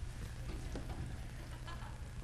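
Quiet room noise: a steady low hum with a few faint scattered clicks, and a brief thump right at the start.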